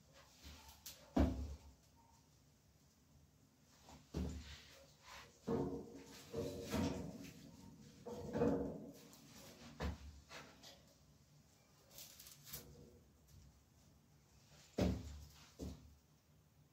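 Sticks and small logs of firewood being set on the concrete hearth of a built-in grill fireplace while a fire is built: separate sharp wooden knocks, with a longer stretch of scraping and clattering in the middle.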